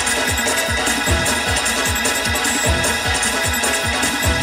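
Hammond organ playing a sustained, up-tempo praise-break groove over a fast, steady low beat of about four to five strokes a second.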